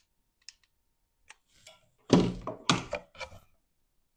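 A few faint clicks, then three knocks about two seconds in, the first the loudest: a hot glue gun being set down and a small wooden craft pallet being handled on a tray.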